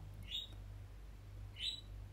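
Two faint, short rising chirps, like a small bird calling, over a low steady hum.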